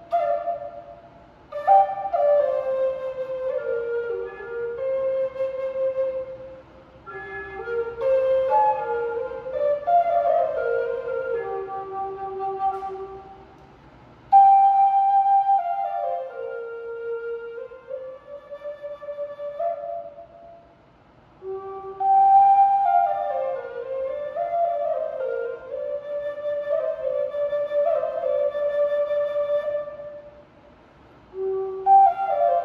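Solo Native American-style flute of aromatic cedar, keyed in G minor, playing a slow melody. Four phrases, each starting high and stepping down to a lower held note, with short breath pauses between them.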